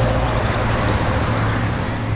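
Steady city road-traffic ambience: a continuous hum of traffic with a strong low drone.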